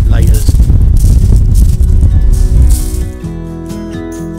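Heavy wind buffeting the microphone, a loud rumbling roar with gusty hiss, on an open beach. About three seconds in it gives way to quieter background music.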